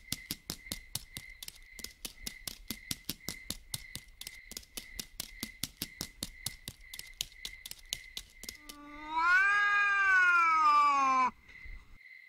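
A long cartoon cat meow that rises and then falls in pitch, lasting about two and a half seconds near the end. Before it, a quick, even run of soft clicks, about four a second, plays as a footstep sound effect for a walking dog.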